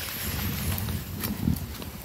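Footsteps crunching and rustling through leaf litter and twigs on a forest trail, a few dull knocks, the heaviest about one and a half seconds in.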